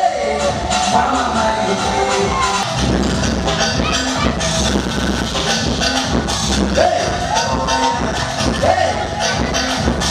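Live band music played loud through a PA system, with a steady beat and heavy bass. A singer's voice holds notes over it and slides up in pitch at the start and twice in the second half.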